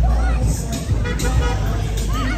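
Motorcycles running along a crowded street with a low engine rumble that eases about half a second in, mixed with horn toots, voices and music.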